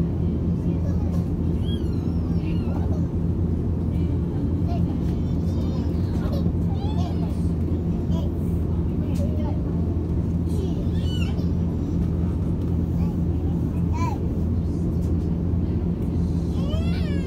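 Steady low hum inside the cabin of an Airbus A330neo taxiing. Faint passenger voices, a child's among them, come and go over it.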